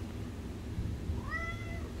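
Orange tabby cat giving a single short meow a little past a second in. The call rises in pitch at its start, then levels off.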